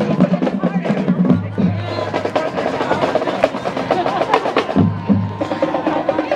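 Marching band drumline playing a cadence: snare drums cracking and pitched bass drums sounding repeated low notes in a steady rhythm, with crowd chatter.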